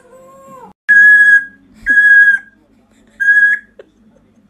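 African grey parrot whistling: three loud whistles on one steady high pitch, each about half a second long, the last a little shorter. A faint short call comes just before them.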